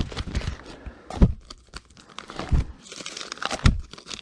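Brown paper sleeves of 78 rpm records rustling and crinkling as a stack is flipped through by hand, with a few soft knocks as the discs bump together.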